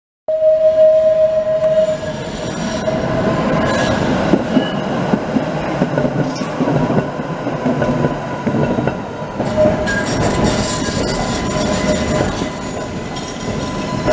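Tatra T5C5 trams rolling past on the rails with a steady rumble of wheels and running gear. A thin, steady high squeal from the wheels runs through it, with a stronger squeal tone in the first second or two.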